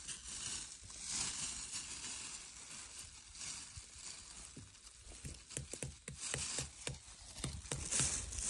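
Dry pine-needle litter rustling and crackling under a hand that is pulling chanterelle mushrooms out of it, with many small quick ticks and snaps. The ticks come thicker in the second half.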